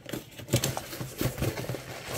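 Cardboard box being pulled open by hand: flaps scraping and crinkling, with a run of small knocks and rustles starting about half a second in.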